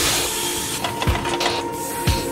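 Steam locomotive sounds: a hiss of steam, then a few sharp mechanical clanks, over a steady high tone.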